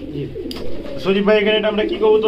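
Domestic pigeons cooing, a sustained low call from about a second in, with a man's voice in the background.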